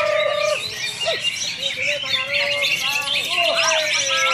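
Many caged green leafbirds (cucak hijau) singing at once: a dense, unbroken chorus of rapid high chirps and twitters, with lower drawn-out whistled notes that bend in pitch.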